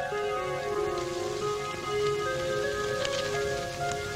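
Soft background music of held notes, several sounding together and shifting in slow steps, over a steady hiss. A short crackle comes about three seconds in.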